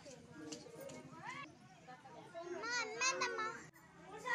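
Faint background voices of women and children talking and calling out. A louder stretch of high calls comes about two and a half seconds in, then the sound cuts off briefly.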